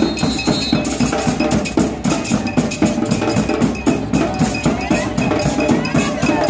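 Carnival percussion music: a cowbell struck in a fast, steady rhythm over drums.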